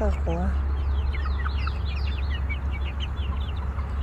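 Young chickens peeping and clucking as they feed from a pan of chick starter: many short, high, falling cheeps through the middle, over a steady low rumble.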